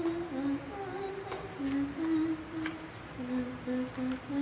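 A slow, simple hymn-like melody hummed or sung softly by a woman, one held note after another, with a few light clicks of handling.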